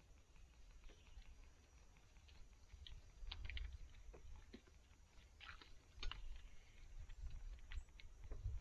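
Faint clicks, taps and scrapes of climbing sticks and tree stand gear knocking against a pine trunk as a climber steps up, over a low rumble.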